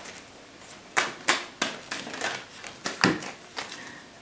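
A cat at play making a series of sharp, irregular clicks and knocks, starting about a second in.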